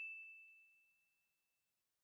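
A single high, bell-like ding from a logo animation's chime sound effect, ringing out and fading away over about a second and a half.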